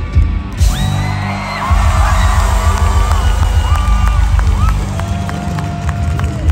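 Live rock band holding low sustained chords through the PA, with a large crowd cheering and whistling over them.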